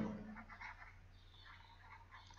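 Near silence: faint room tone with a low hum, after the last of a spoken word fades out in the first half-second.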